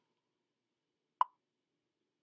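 A single short pop, about a second in, against near silence.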